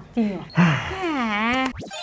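A comic 'boing'-style sound effect whose pitch wobbles down and levels off for about a second, then a quick whoosh near the end leading into a bright jingle sting.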